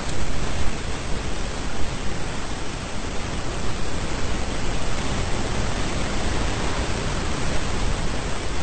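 Steady, fairly loud hiss of background noise on the recording, even and unbroken, with no other sound over it.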